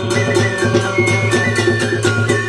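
Vietnamese chầu văn ritual music: quick, steady wooden clicks and drum strokes, about five a second, under a held melodic line.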